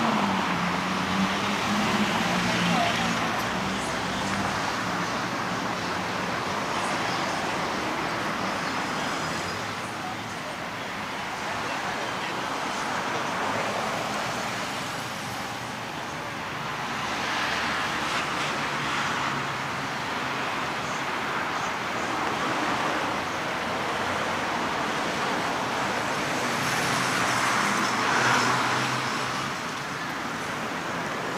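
Road traffic on a wide city street: a steady wash of passing cars that swells and fades several times, with an engine's low hum in the first few seconds.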